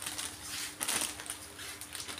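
Plastic wrap and a woven plastic sack around a potted tree's root ball crinkling and rustling in irregular bursts as hands work at the base of the trunk.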